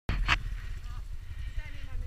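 Dirt bike engine idling, a low steady rumble, with a short knock just after the start.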